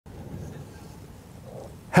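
Elephant seals grunting faintly: a low rumble over a steady background haze.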